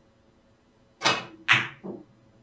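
Carom billiards shot: the cue tip strikes the cue ball about a second in, and the cue ball clacks hard into the object ball half a second later. A softer knock of a ball off the cushion follows near the end.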